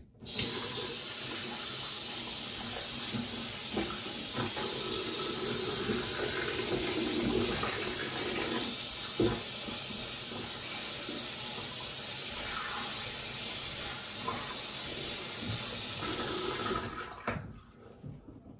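Bathroom sink tap running steadily, with irregular splashing, shut off near the end.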